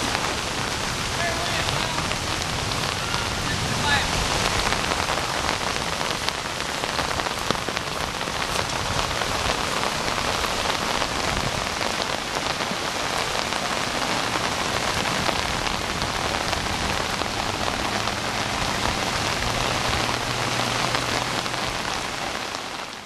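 Steady hiss of running floodwater pouring through a washed-out road embankment. A faint low hum joins near the end.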